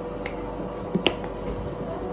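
Sharp plastic clicks from handling an electric toothbrush and toothpaste tube: a faint click, then a louder snap about a second in, over a steady faint hum.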